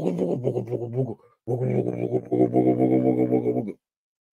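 A man humming or crooning without words in low, drawn-out tones: two long phrases, the second steadier and longer.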